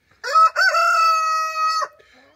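A rooster crowing once: a short rising opening, then one long held note that cuts off shortly before the end.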